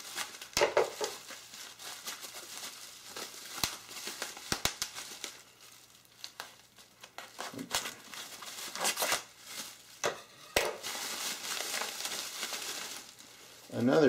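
Plastic bubble wrap crinkling and crackling as it is handled and cut open with scissors, in irregular bursts with a longer stretch of crinkling near the end.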